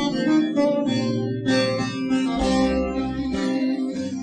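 Music: an instrumental stretch of the song, melodic instruments playing with no lyrics sung.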